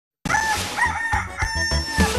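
A rooster crowing over the start of a music jingle: a few short rising-and-falling notes, then a long held note, with a steady bass beat underneath. It comes in suddenly a moment after silence.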